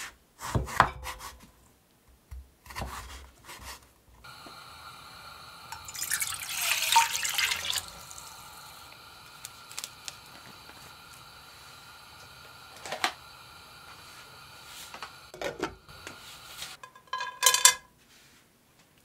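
A kitchen knife cutting carrot strips on a wooden chopping board, a few separate strokes. Then, over a steady faint hum, water runs noisily for about two seconds, and a few light clicks and handling noises follow. Near the end comes a short, loud crackling rustle as dried glass noodles are set into a pot.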